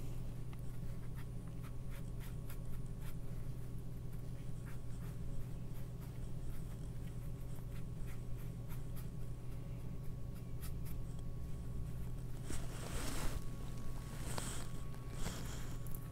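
Flat watercolor brush stroking and scrubbing wet paint across cold-pressed watercolor paper: faint, soft scratching that grows louder for a stretch near the end, over a steady low hum.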